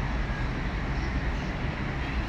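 Steady low rumble of outdoor city noise, mostly distant traffic, heard from high up on a hotel tower balcony.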